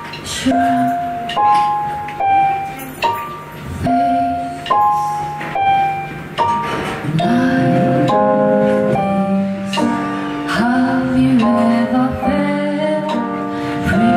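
A woman singing to her own playing on a Roland FP-7 digital piano: a slow song of notes and chords that strike and fade. About halfway through, the music fills out into longer held notes at a steadier level.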